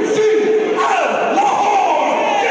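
A man announcing over a PA, drawing his words out in long held calls with falling pitch, over a crowd shouting and cheering.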